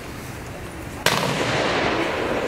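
Rifle volley fired as military honors for the fallen: one sudden loud crack about a second in, followed by a long echoing tail.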